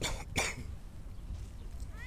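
A person coughing twice in quick succession right at the start, over a steady low rumble.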